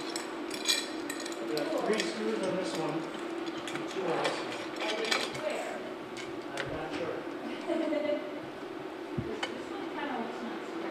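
Scattered light metallic clinks and taps of aluminium 80/20 extrusion bars, gusset plates and fasteners being handled and fitted together, over a steady low hum.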